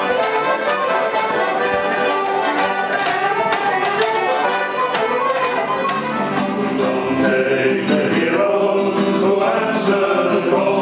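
A folk band plays a lively tune on fiddles and accordion with a steady beat. Near the end it gives way to a man singing to an acoustic guitar.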